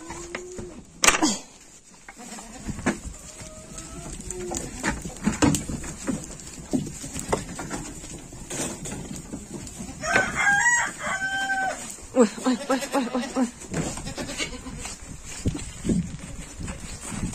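Goats jostling through a wooden barn pen, with knocks and clatters against the boards and a few short bleats. About ten seconds in a rooster crows.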